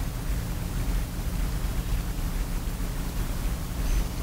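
Steady hiss with a low hum under it, with no distinct event: background room and recording noise.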